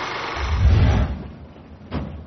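A rushing noise swelling into a deep, rumbling boom about half a second in, which then fades away.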